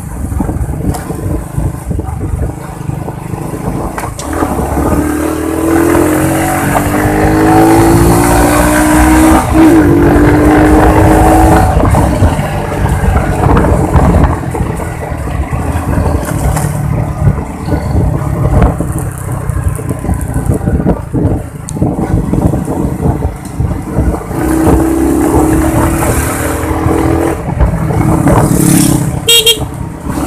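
Motorcycle engine running on the move with wind rushing over the microphone. The engine pitch climbs as the bike accelerates a few seconds in, then again in the last few seconds.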